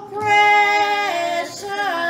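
A woman's voice singing unaccompanied in a slow hymn style, holding a long note for about a second, then stepping down and sliding lower near the end.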